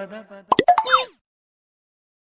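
A short cartoon-style comedy sound effect about half a second in: a few quick sliding pops and a falling glide in pitch, lasting about half a second.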